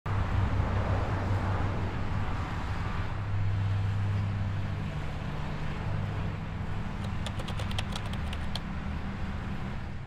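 Street ambience of road traffic, a steady low rumble. A quick run of sharp clicks comes about seven seconds in, and the sound fades out at the end.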